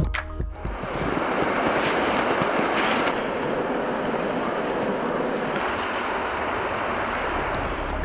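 The Biya river rushing steadily over a stony, rippled stretch, making a continuous even wash of water that fades in within the first second.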